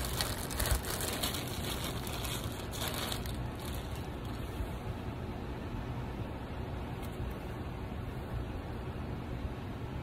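Plastic mailer bag crinkling as it is handled, loudest in the first second and again about three seconds in, over a steady low room hum.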